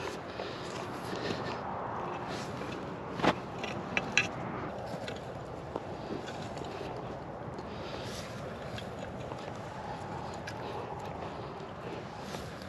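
Metal garden rake dragged back and forth through freshly tilled clay soil with wood chips, a steady scraping with a few sharp clicks about three to four seconds in.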